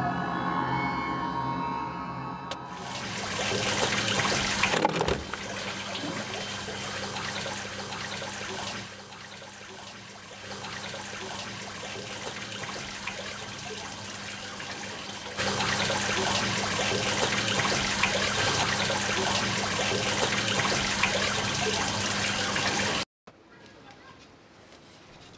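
Eerie pitched music for the first couple of seconds, then a steady rushing, water-like noise with a low hum beneath it. It drops back and swells again partway through, and cuts off suddenly about a second before the end.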